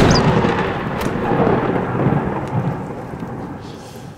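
A loud, thunder-like rumbling crash that fades away over several seconds, with a sharp click about a second in: a magic-spell sound effect going off after a wizard's incantation.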